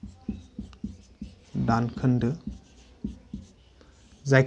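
Whiteboard marker writing on a whiteboard in a series of short strokes, broken about halfway through by a brief spoken word.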